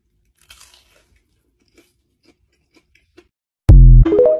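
A bite into a crispy, breadcrumb-coated deep-fried lemper gives a faint crunch, followed by a few soft chewing crunches. Near the end, TikTok's end-screen sound effect cuts in suddenly and loud.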